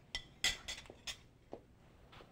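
A few light clinks and taps of a serving utensil against a glass baking dish and a plate as ratatouille is scooped out, about five in all, the loudest about half a second in.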